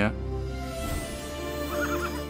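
Music with long held notes, and a horse whinnying briefly near the end.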